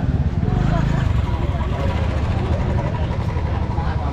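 Busy street sound: a motor scooter's engine passing close, loudest in the first second or so, with people talking around it.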